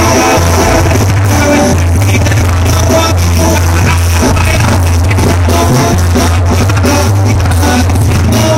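Live banda music played loud through a stage sound system: brass, drums and a deep, steady bass line, with a singer.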